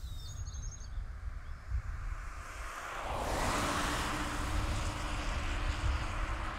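Outdoor ambience: a low rumble throughout, a few short high chirps near the start, and from about three seconds in a louder rush of noise with a steady low hum underneath.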